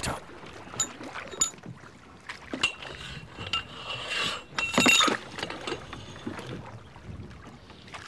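Irregular knocks and metallic clinks of gear being handled aboard a small river fishing boat, with a thin high squeal in the middle and the loudest knock about five seconds in.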